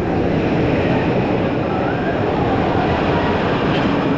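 Steady, loud rumbling noise with faint voices under it.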